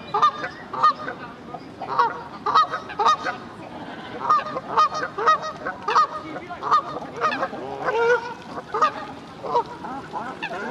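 Waterbirds calling: a steady run of short, repeated calls, about two a second, some overlapping.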